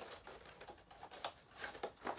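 Clear plastic blister packaging crackling and clicking as it is handled, with a few sharp crackles in the second half.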